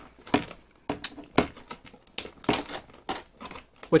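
Clear plastic packaging tray crinkling and crackling irregularly as it is handled in the hand.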